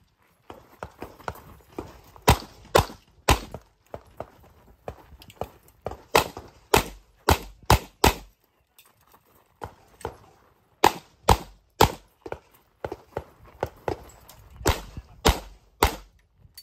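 Pistol shots fired in quick strings of three to five, about fifteen in all. The strings are separated by pauses of two to three seconds as the shooter moves between positions. Fainter knocks are heard between the strings.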